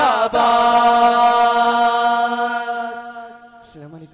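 A group of voices holds one long sung note in unison, the closing note of a Malayalam revolutionary song, which fades out about three seconds in.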